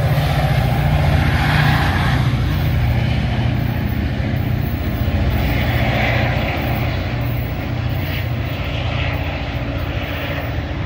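Metra's EMD F40PHM-3 diesel locomotive pushing a commuter train away under power, its two-stroke prime mover giving a steady low drone that slowly fades as the train draws off.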